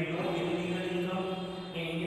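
A man's voice held in a steady, drawn-out monotone, like a long sustained syllable or chant-like talk.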